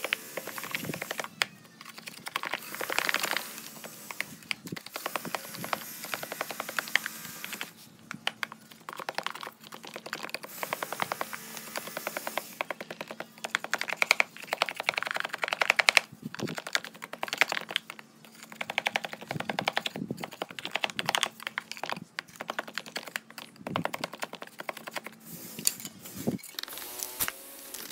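Wooden stick tamping damp cement mix into a wooden block mould, heard as rapid runs of gritty clicks and taps in bursts of a second or two with short pauses between.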